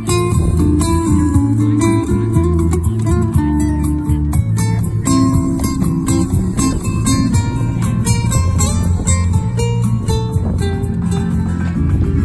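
Nylon-string guitar playing a flamenco-style piece: quick plucked melody notes over sustained low bass notes.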